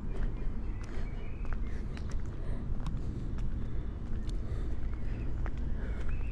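Footsteps of a person walking on a paved path, heard as scattered short taps over a steady low rumble.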